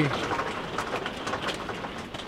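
Heavy rain beating on a camper van's roof and windscreen, heard from inside the cab: an even hiss dotted with sharp ticks.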